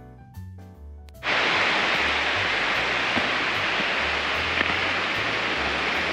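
Background piano music that cuts off about a second in, replaced by the loud, steady rush of running water at a trailside spring.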